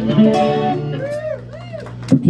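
Live band with electric guitar finishing a song: a held chord cuts off under a second in, followed by two short notes that bend up and back down.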